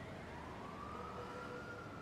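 Faint siren wailing slowly, its pitch rising and then levelling off, over a steady background hiss of street ambience.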